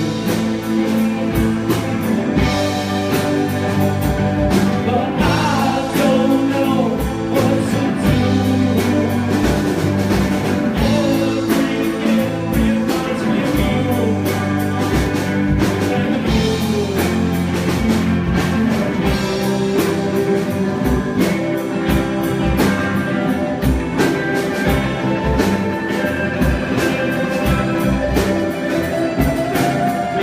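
Live rock band playing a song: electric guitars and drum kit, with the lead singer singing into the microphone.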